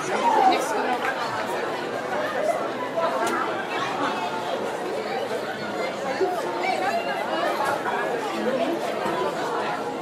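Classroom chatter: many voices talking over one another at once, steady throughout, with a few faint clicks among them.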